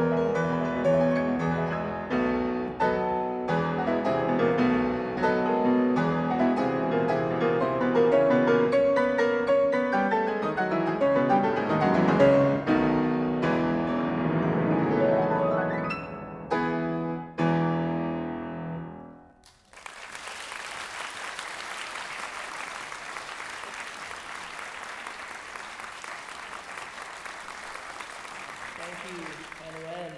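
Solo grand piano playing a classical piece, closing with a few separate chords that ring and die away about two-thirds of the way in. Audience applause follows and runs steadily until near the end.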